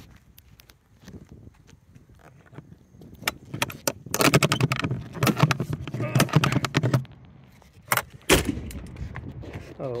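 Metal compartment door on the truck's side being handled and closed: a few seconds of rattling and scraping, then one sharp slam about eight seconds in.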